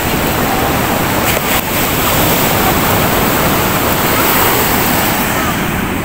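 Ocean surf washing steadily onto a sandy beach, a continuous rush of breaking waves.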